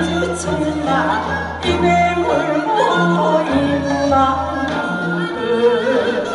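A woman singing a Korean folk song (minyo) into a microphone with wide vibrato and sliding ornaments, over instrumental accompaniment with a steady bass line.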